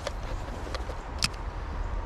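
Pflueger President spinning reel being engaged after a cast: one sharp click about a second in as the bail snaps shut, with a few lighter clicks, over a steady low rumble.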